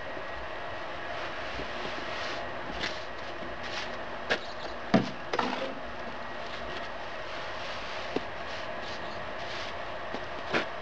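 A steady background hum, with a few short scrapes and taps of trowel and gloved hand working cement mortar onto the mesh-reinforced bin wall, the loudest about five seconds in.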